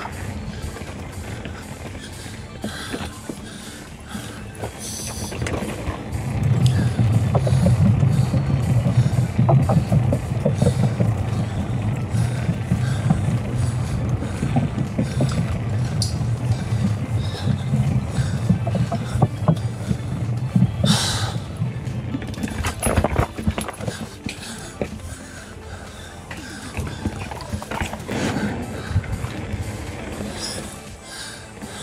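Devinci Atlas Carbon RC mountain bike running along a dirt trail, with tyre and drivetrain rattle. From about six seconds in, there is a heavier, rapid rumble of tyres over the planks of a wooden boardwalk, which eases off a few seconds after twenty. Background music sits under the riding noise.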